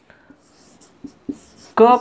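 Marker pen writing on a whiteboard: a few short, faint scratchy strokes as a letter is drawn.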